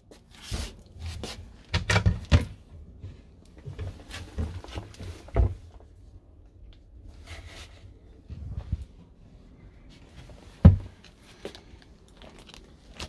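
Scattered knocks and clunks of campervan cupboard panels being handled and of footsteps in the small cabin, the loudest a sharp knock near the end.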